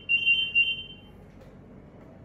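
Zebra DS9908R handheld barcode/RFID scanner sounding a long, continuous high-pitched beep while it reads RFID tags; the beep stops about a second in.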